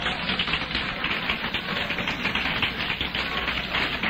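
A congregation applauding: a steady patter of many hands clapping.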